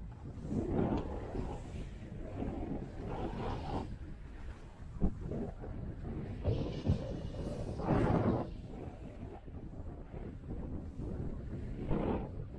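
Skis hissing and scraping through soft snow, swelling louder with each turn, with wind on the microphone and a few short knocks.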